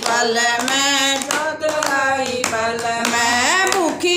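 Several women singing a devotional bhajan together, clapping their hands along with the song.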